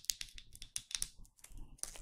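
Fingernails tapping and clicking on a small glass jar of face cream: a quick, irregular run of light clicks.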